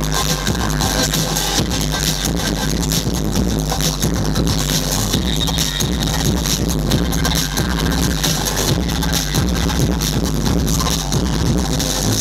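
Loud breakbeat electronic dance music from a live DJ set, played over the venue's sound system with a steady, heavy bass beat.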